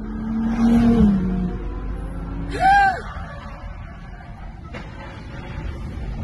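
Car engine and road noise heard from inside a following car, the engine note rising over the first second or so, with a short loud cry about halfway through.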